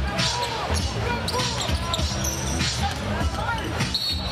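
Live arena game sound of an NBA basketball game: a basketball dribbled on a hardwood court, with squeaking sneakers and crowd noise throughout.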